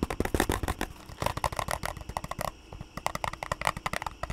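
Knockoff LEGO-style plastic building bricks handled close to a microphone: quick runs of small plastic clicks and clatter, in three bursts with short pauses between.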